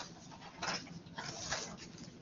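A man blowing his nose into a tissue: short, breathy bursts of air through the nose, one about two-thirds of a second in and another around a second and a half in.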